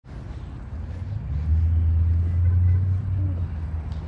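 Low rumble of a car in a parking lot, swelling about a second and a half in and easing off after three seconds.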